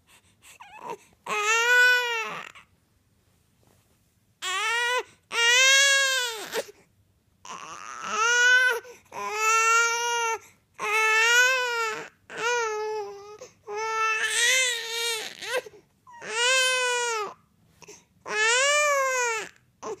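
Infant crying during tummy time: a string of about ten wails, each roughly a second long, rising then falling in pitch, with short breaths between and one longer pause early on.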